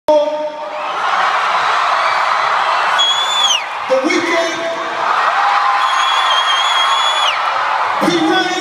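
Arena crowd cheering and whooping, with shrill whistles cutting through: one about three seconds in that falls away after half a second, and another held for about a second and a half near the end.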